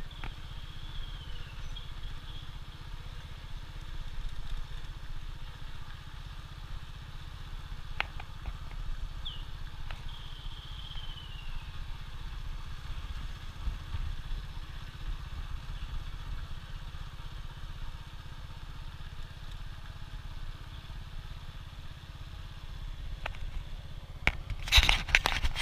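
Boda-boda motorcycle running steadily while carrying a passenger, heard as a low, muffled rumble. A faint high falling tone comes twice, about a second in and near ten seconds, and there are a couple of brief knocks.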